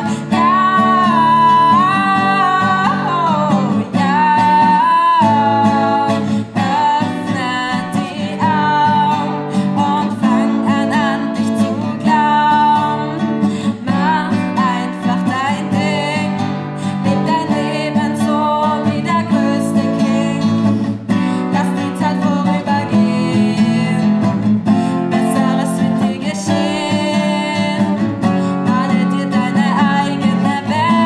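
A young female singer sings a melody over her own strummed nylon-string classical guitar.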